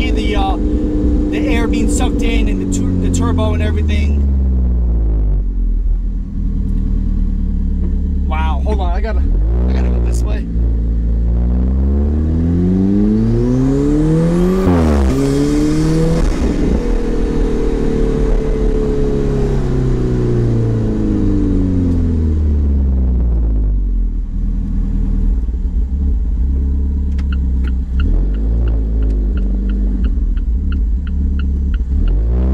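Alfa Romeo 4C's 1.7-litre turbocharged four-cylinder, fitted with a Eurocompulsion V2 cold air intake, heard from inside the cabin: the engine note falls, then rises steeply through a hard pull about halfway in, with a rush of air noise at the peak, and slides back down as the car eases off. A run of quick ticks near the end.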